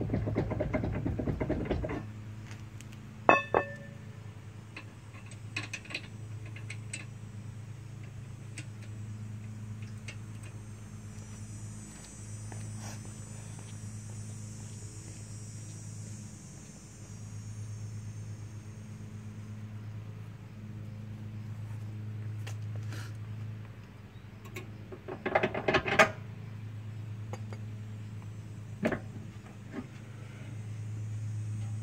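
Steel sway bars and hitch hardware of an Equalizer weight-distribution hitch being handled as they are removed. There is a clatter at the start, a single ringing metal clink a few seconds in, and a cluster of clanks near the end, all over a steady low hum.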